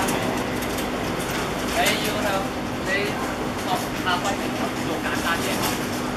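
Voices shouting and calling out across a football pitch during play, in short bursts, over a steady background hum and outdoor noise.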